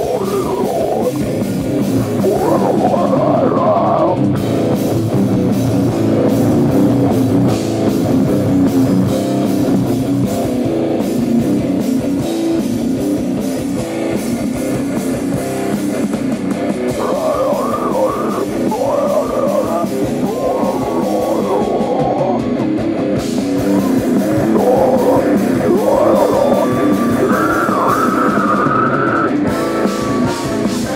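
Metal band playing live: distorted electric guitars and bass over a drum kit, loud and continuous without a break.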